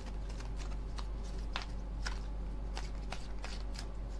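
A deck of oracle cards shuffled by hand: scattered soft clicks and flicks of card edges slipping against each other, over a steady low hum.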